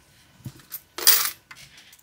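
Loose coins clinking as they are handled and set down on a paper sheet: a few light clicks, then a louder bright jingle about a second in, and a few faint clicks after.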